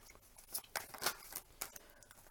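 A deck of tarot cards being shuffled by hand: a quick series of soft card slaps and flicks, about three or four a second.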